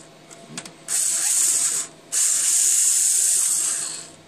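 Cordless electric screwdriver running in two spells, backing out a screw. It gives a steady high-pitched whine for about a second from about a second in, then, after a brief pause, for nearly two seconds more.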